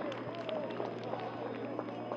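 Several voices of players and onlookers shouting and calling out at once on a football pitch, with a steady low hum underneath.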